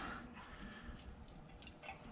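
Mostly quiet, with a few faint clicks near the end from a skinning knife and hands working the raccoon's hide loose from the skull.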